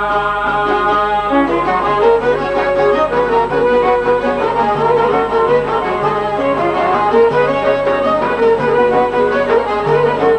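Two çifteli, Albanian long-necked two-string lutes, playing a fast plucked instrumental melody over a low repeated drone note; the playing gets busier about a second and a half in.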